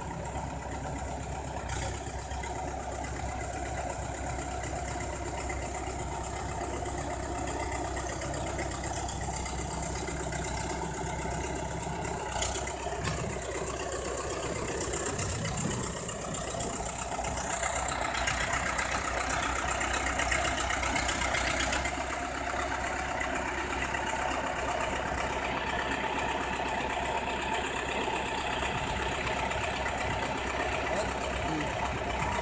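Diesel engine of a BEML crawler bulldozer running steadily as the machine pushes wet soil with its blade. The engine gets louder for a few seconds past the middle, with one sharp click a little before that.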